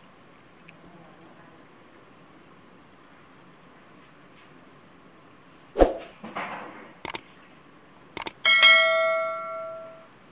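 Sound effects for a subscribe-button animation: a sudden pop about six seconds in, then two sharp mouse-style clicks, then a bell ding that rings out and fades over about a second and a half near the end. Before that there is only faint background.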